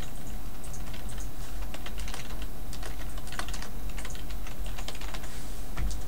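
Typing on a computer keyboard: a quick, irregular run of key clicks as a line of text is entered, over a steady low hum.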